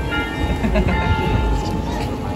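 City street noise: a steady low rumble with a few thin, steady high tones over it.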